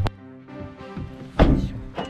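A car door latch clicks, then about one and a half seconds in the door is shut with a single loud thud.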